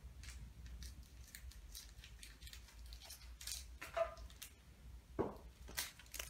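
Scissors cutting the tops off Japanese Pokémon card booster pack wrappers: a faint, irregular series of short snips.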